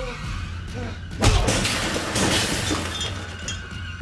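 A loud crash about a second in as a metal wire shelving unit loaded with goods topples over, with things breaking and clattering down, over dramatic film score.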